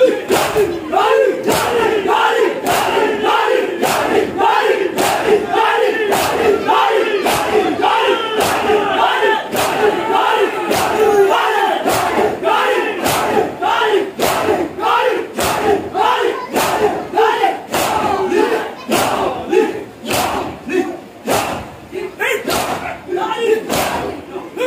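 A large crowd of mourners performing matam: many hands striking bare chests together in a steady beat of sharp slaps, under the massed shouting of the crowd.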